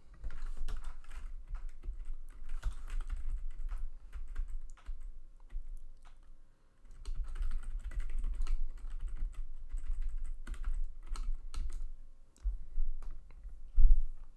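Typing on a split computer keyboard: two runs of quick keystrokes with a short pause about six and a half seconds in, ending with one hard keystroke near the end.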